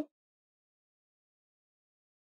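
Silence: a dead-quiet gap with no sound at all.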